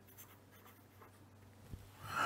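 Faint scratching of a fine-tipped pen writing a word on paper, over a low steady hum.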